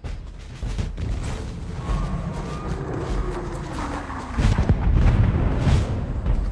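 Dramatic film score with low booms and a deep rumble, swelling louder about four and a half seconds in.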